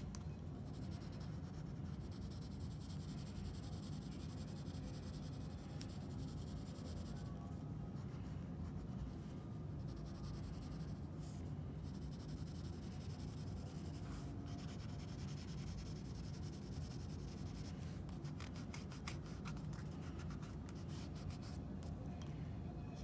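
Graphite pencil scratching and rubbing on sketchbook paper while shading a drawing, with a steady low hum underneath. The strokes come quicker and closer together near the end.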